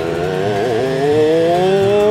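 Cartoon lift motor whirring as the lift climbs, its pitch rising steadily, with a brief wobble a little under a second in.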